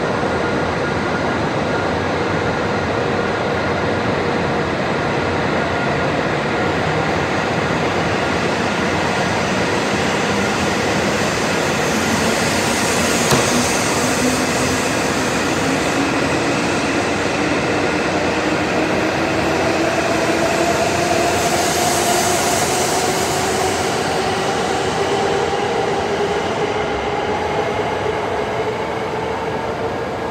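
E7/W7-series Hokuriku Shinkansen train pulling out of the station and gathering speed, with the running noise of the cars passing close by. From about halfway through, a whine climbs steadily in pitch as the train accelerates.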